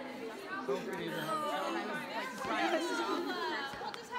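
Several people talking at once: overlapping, lively chatter of a group.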